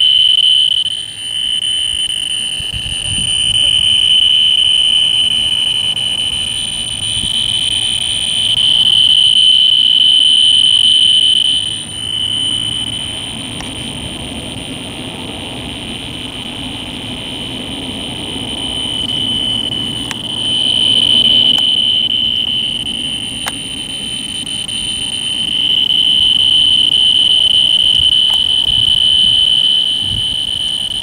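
A loud, steady high-pitched tone that swells and fades in waves several seconds long.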